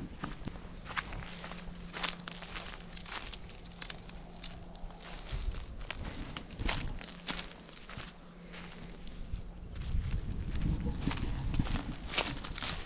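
Footsteps walking over dry eucalyptus leaf litter and bark, about one to two steps a second, with a faint steady low hum underneath for most of the stretch.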